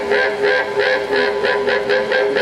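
Several didgeridoos played together: a steady low drone with rapid, rhythmic pulses shaped over it, about six a second.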